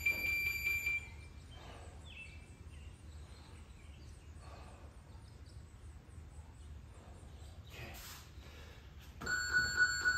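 Electronic interval-timer beeps: a long high beep that ends about a second in, then a lower beep near the end that signals the start of the next work interval. A faint steady low hum runs underneath.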